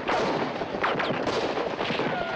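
A dense volley of rifle and pistol gunshots in quick succession. Short falling whines are heard among the shots.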